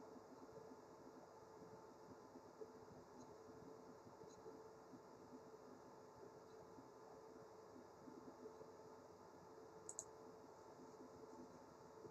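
Near silence: faint room tone with a low steady hum, and a faint click about ten seconds in.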